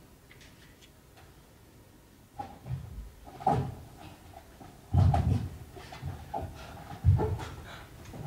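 Irregular dull thumps and scuffs of a dancer's body and feet on a stage floor, starting about two and a half seconds in, the loudest about five and seven seconds in.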